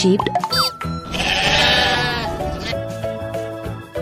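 A sheep bleating: one long, wavering baa starting about a second in, over background music. A short rising whoosh comes just before it.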